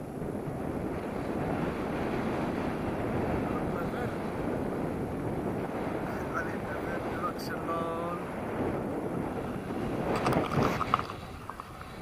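Steady rush of airflow buffeting the camera microphone of a paraglider in flight, with louder gusty buffeting about ten seconds in. A faint voice is heard briefly in the middle.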